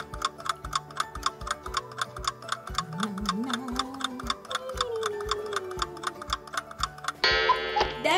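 Countdown-timer sound effect: a clock ticking rapidly and steadily over faint background music. Near the end it gives way to a short alarm ring that marks time up.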